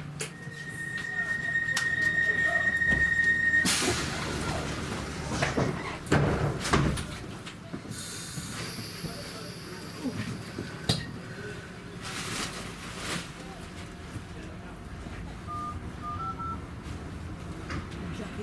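Class 317 electric train at a station stop: a steady high warning tone for about three and a half seconds, then knocks and thuds of the doors closing with bursts of air hiss, and a few short beeps shortly before the train pulls away.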